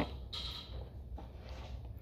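Low, steady rumble of strong wind blowing outside, with a faint click at the start.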